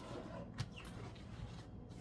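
Faint sounds of hands working and turning a soft, slightly sticky bread dough on a floured countertop, with a light tap about half a second in.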